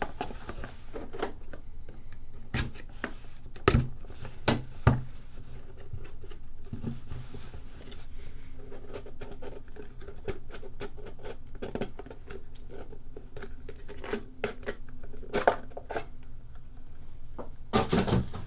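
Hands opening and handling a cardboard trading-card box: scattered taps, knocks and rustling, with a few sharper knocks about four to five seconds in.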